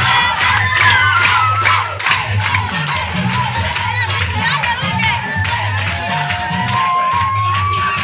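Dance music with a steady bass beat played through a large loudspeaker, with a crowd cheering and shouting over it.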